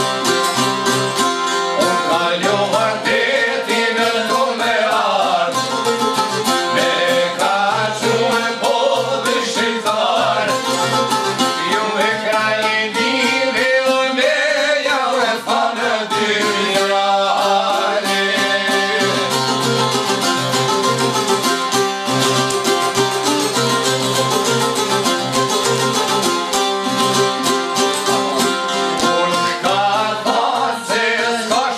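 Albanian folk song on plucked long-necked çifteli lutes, strummed in a fast, steady accompaniment, with a man singing in long wavering phrases over it for about the first half; after that the lutes carry on alone.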